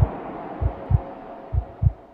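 Heartbeat sound effect: low double thumps in a lub-dub pattern, three beats a little under a second apart, over a faint hiss that fades away and a thin steady tone.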